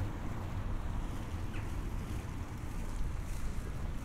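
Wind buffeting the camera microphone outdoors, a low, uneven rumble under faint open-air background.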